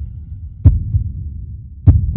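Intro sound design: a low, throbbing bass rumble with two sharp, heavy hits about a second apart, one early and one near the end.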